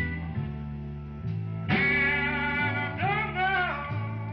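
Electric blues band playing: a steady bass line under a guitar chord struck about a second and a half in, then a guitar line bending in pitch near the end.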